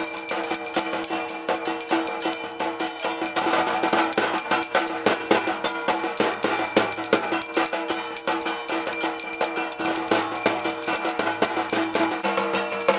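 Music with bells ringing continuously and quick jingling, shaken percussion, the sound of a Hindu aarti.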